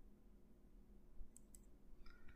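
Near silence with two faint computer mouse clicks in quick succession about a second and a half in, picking a colour from a software palette.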